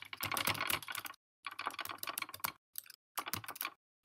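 Typing on a computer keyboard: quick runs of key clicks broken by a few short pauses.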